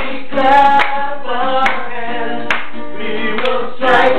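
A small group of voices singing a gospel song to acoustic guitar, with hands clapping along about once a second.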